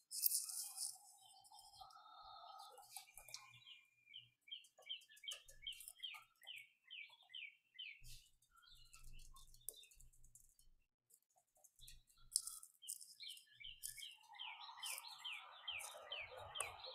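A bird singing faintly in the background, picked up by a call participant's microphone: two runs of quick down-slurred notes, about three a second, the second run near the end.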